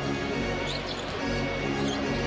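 Music playing in the arena while a basketball is dribbled on the hardwood court.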